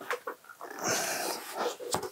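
Handling noise as a large supertelephoto lens in a fabric camouflage cover is lifted off a desk: a few light knocks, then rustling and scraping from about a second in, with a sharp click near the end.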